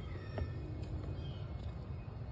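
Faint clicks and rustling of a hand twisting a plastic turn-signal bulb socket loose in a headlight housing, over a steady low background hum.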